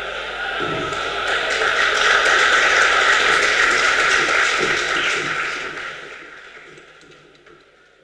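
Audience applauding: a dense patter of hand-clapping that swells over the first couple of seconds and then dies away over the last few seconds.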